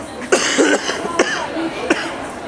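A person close to the microphone coughing: one loud cough about a third of a second in, then two shorter, sharper ones.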